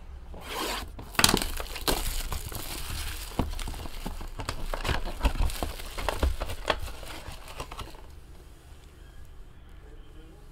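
Plastic wrapping on a trading-card box being torn and crinkled off, with the box being pulled open, busiest for the first eight seconds. Near the end it gives way to quieter handling of a clear plastic card holder.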